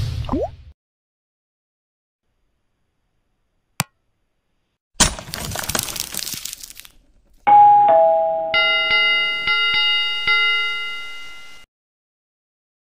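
Animated-intro sound effects: a short whoosh fades at the start, then a single click. About five seconds in comes a shattering crash that dies away over two seconds. From about seven and a half seconds a bell rings, struck about four times, and rings out before the end.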